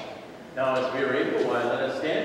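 A man speaking, his voice growing louder about half a second in.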